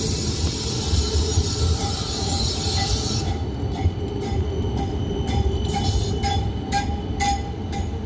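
Electric tram running past on its track, a low rumble with a high hiss that cuts off about three seconds in. After that, regular sharp clicks come about twice a second.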